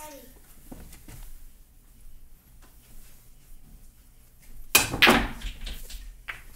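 A hard pool shot about three-quarters of the way in: the cue strikes the cue ball with a sharp crack and the balls clack together, with a brief man's vocal exclamation right on top of it.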